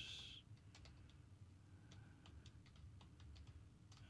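Faint computer keyboard typing: a few sparse, irregular keystrokes.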